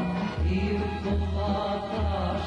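A male singer performing a Serbian folk song over instrumental accompaniment with a steady bass line.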